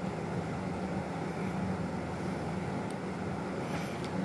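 A steady low hum under a faint even hiss, with no distinct events: room tone.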